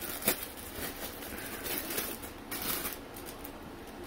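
Thin plastic bag crinkling and rustling as it is opened and a power cable is pulled out of it, with a sharp crackle about a third of a second in.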